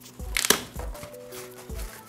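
Foam wrapping sleeve rustling and crinkling as a boxed unit is pulled out of its carton, with one sharp crackle about half a second in.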